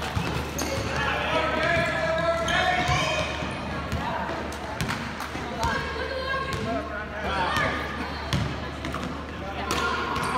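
A basketball bounces on a hardwood gym floor during play, with raised voices calling out over it.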